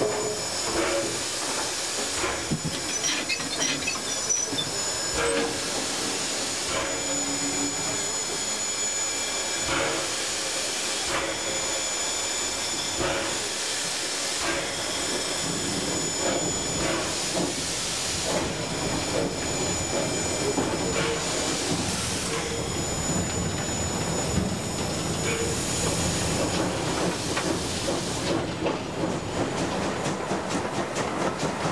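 Cab sound of the FS Gr. 625 steam locomotive running slowly in a shunting move: a steady hiss of steam with scattered knocks and clanks from the running gear and the rails.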